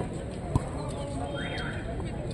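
A football is kicked once, a sharp thud about half a second in, over the voices of players and spectators.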